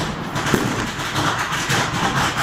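Small hand-lit firework burning on the ground, giving a steady crackling hiss as it throws sparks.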